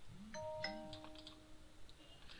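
A faint two-note chime: two ringing tones struck about a third of a second apart, each dying away over a second or so.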